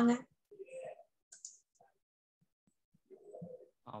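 A person's voice: one brief word, then a pause with faint scattered low sounds and light clicks, and speech resuming near the end.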